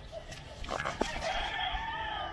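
A rooster crowing: one long drawn-out call starting about a second in, after a few sharp clicks.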